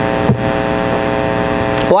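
Steady electrical hum with hiss, a stack of steady tones that holds unchanged through a pause in speech, with a brief short sound about a third of a second in.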